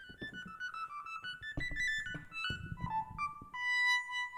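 EWI (electronic wind instrument) set to its bass sound, played in its high register: a fast run of short notes, then one long held note near the end.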